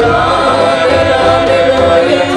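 Balkan brass band playing live behind a woman singing lead, with trumpets, saxophone and sousaphone holding long chords under her voice.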